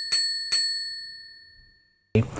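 A bright bell-like ding, struck twice in quick succession about half a second apart over the ring of a first strike, each ring fading away over about a second and a half.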